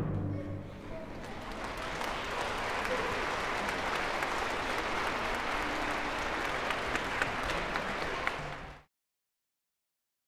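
Audience applauding, building over the first couple of seconds and then holding steady until it cuts off suddenly near the end. It opens over the fading ring of the orchestra's final chord.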